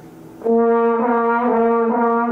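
Trombone playing a run of connected notes that starts about half a second in and moves to a new note about every half second. It is counting down by half steps with the slide from D to B flat in its alternate fifth position.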